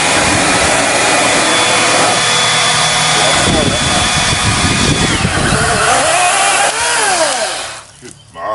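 Chainsaw running flat out and cutting through a fallen tree branch. Its steady whine drops in pitch about halfway through as the chain bites under load. It winds down and stops shortly before the end.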